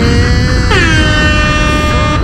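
An air-horn sound effect sounds about two-thirds of a second in, its pitch dropping slightly and then holding for about a second before it stops, over music with heavy bass.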